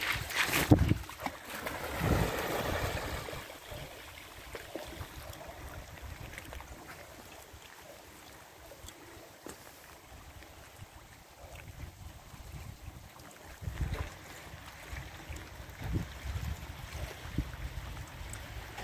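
A retriever splashing into the lake in the first few seconds, then small waves lapping at a stony shore while the dog swims, with gusts of wind rumbling on the microphone now and then.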